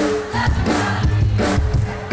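Band music with a choir singing over a steady drum beat.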